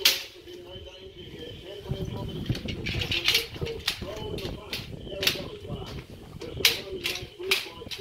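Several sharp, irregular metal clicks and clanks from a steel mesh utility cart's frame being handled and a hand tool knocking against its fittings.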